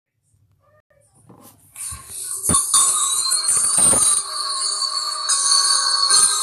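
Several video soundtracks playing over one another: a dense jumble of music and cartoon sound. It starts faint and builds to full loudness within the first two to three seconds, with a few sharp hits along the way.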